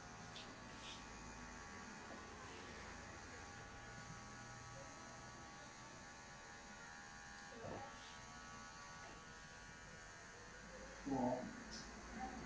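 Faint, steady buzz of electric hair clippers running. A short voice-like sound comes near the end.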